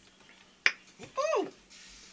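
A woman's sharp click, then a short wordless vocal sound that rises and then falls in pitch: her reaction to the sour pickled pig-feet brine she has just drunk from the jar.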